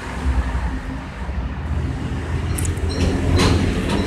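Low, steady rumble of a passing vehicle.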